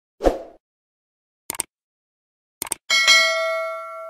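Subscribe-button animation sound effects: a short thump, two pairs of mouse-click sounds about a second apart, then a notification bell dings once and rings out, fading slowly.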